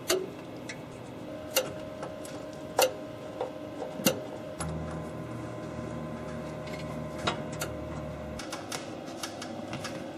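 Scattered sharp clicks and knocks of hands working among cables and metal hardware in a radio equipment rack, with a low steady hum for a few seconds in the middle.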